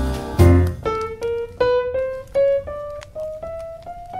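Jazz piano music: a full chord ends just under a second in, then the piano plays a single-note melody on its own, climbing step by step in evenly spaced notes.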